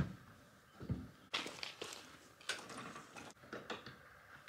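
Faint knocks, scuffs and clicks from a horse trailer being shut up: a soft thud about a second in, then scraping and a few short latch-like clicks toward the end.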